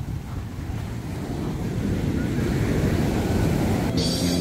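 Small waves breaking on a sandy beach, the wash swelling louder through the second half, with wind rumbling on the microphone.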